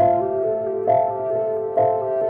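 Calm instrumental music: piano notes struck about once a second and left ringing.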